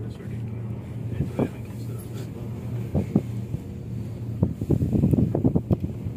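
Wind buffeting the microphone in irregular gusts that grow denser in the second half, over a steady low hum.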